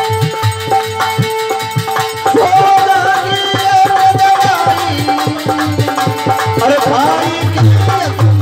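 Bhajan played on harmonium with dholak drumming: held harmonium notes, then a male voice comes in singing a little over two seconds in, over the steady drum beat.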